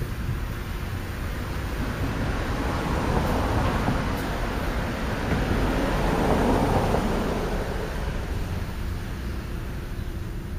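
A road vehicle passing by: a rushing noise that swells to its loudest a little past the middle, then fades away.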